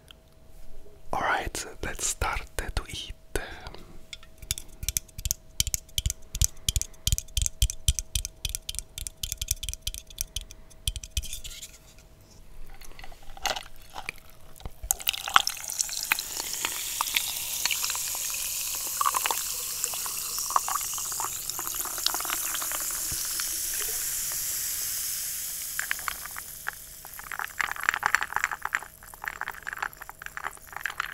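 Quick runs of clicks and taps, then Fanta, a fizzy soft drink, poured from a can over ice cubes into a glass: a steady fizzing hiss for about ten seconds that fades away, followed by crackling fizz near the end.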